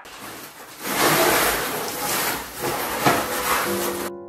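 Rustling and scraping of a flocked artificial Christmas tree's stiff branches as a section of the tree is handled, with small knocks throughout.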